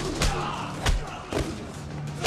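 Hand-to-hand fight: three heavy thuds of blows and bodies hitting, about half a second apart, over a low droning music score.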